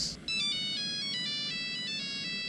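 Mobile phone ringtone playing a simple electronic melody of short stepped notes, starting about a quarter second in.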